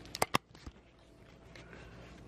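Two sharp clicks a fraction of a second apart, with a fainter one just after, then faint room tone.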